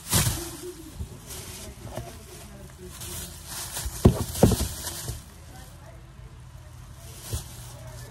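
Plastic bag rustling and crinkling as it is handled and shaken out, with a few sharp knocks, the loudest two about four seconds in.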